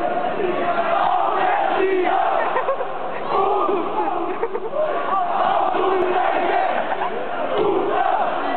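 Ice hockey crowd shouting and chanting together, many voices at once with no let-up.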